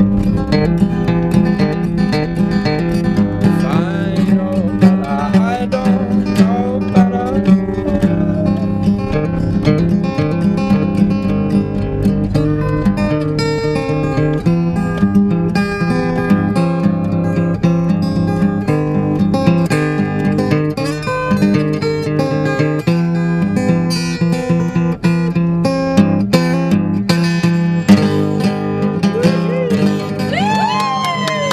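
Acoustic guitar played as a live song accompaniment, strummed and picked without a break.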